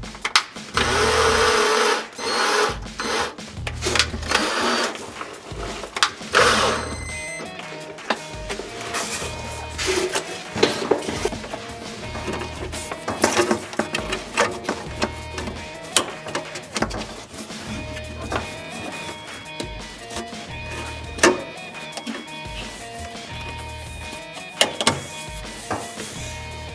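Cordless drill-driver driving a screw into a wooden batten in a few short runs over the first seven seconds or so, the first run the longest. After that come scattered clicks and rustles of a corrugated plastic waste hose being handled, over background guitar music.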